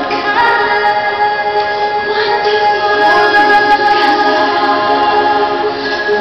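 Music for a water and light show: a choir singing long, held notes.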